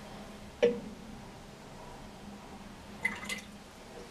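Excess hydrochloric acid being drawn off from a graduated cylinder with a plastic pipette: a short squish about half a second in and a couple of small drips near the end.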